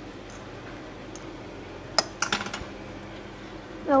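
A sharp metallic clink about halfway through, followed by a few lighter clinks, from a utensil knocking against a metal cooking pan.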